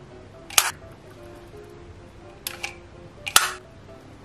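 Sharp plastic clacks of a toy shark grabber's scissor arm and jaws snapping shut as it picks up lollipops: four clicks, the loudest about three seconds in, over soft background music.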